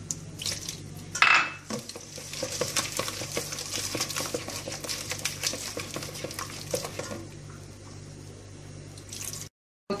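A bare hand squelching and slapping wet whole-wheat-flour batter in a stainless steel bowl, a dense run of small wet pats and crackles, with a short louder burst about a second in. It quietens near the end and cuts out just before the end.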